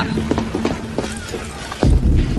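A string of irregular mechanical clicks and clatter over a low steady hum. A loud, deep low rumble comes in just before the end.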